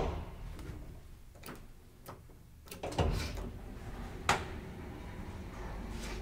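ASEA-Graham elevator working: a sharp click, a few faint knocks, then about three seconds in a clunk after which a low steady hum of the lift machinery sets in, with another sharp click a second later.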